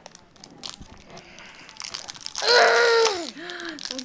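A small plastic toy wrapper crinkles faintly as a child picks at it. About halfway through comes a loud, strained child's vocal sound that falls in pitch as she bites at the wrapper to tear it open, then softer falling voice sounds.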